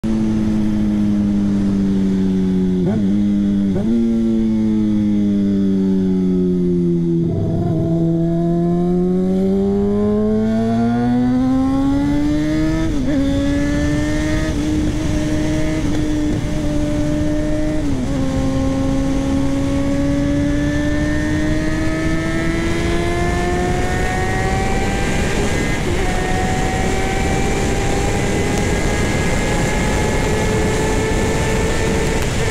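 Honda CBR600RR inline-four engine under way: the note falls as the bike slows, with two short blips a few seconds in, then climbs as it accelerates. The pitch drops suddenly at two upshifts, near the middle and a few seconds later, then rises steadily, with wind rush growing louder.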